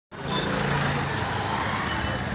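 Busy street traffic noise: a motor vehicle engine running close by with a steady low hum, over a general din of the street.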